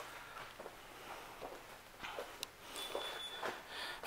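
Faint footsteps and a few soft clicks against quiet room tone.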